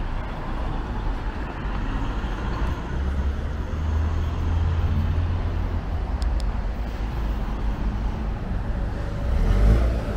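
City street traffic: cars passing on the road beside the pavement, a steady hum of tyres and engines. A low engine rumble swells about three seconds in and again just before the end.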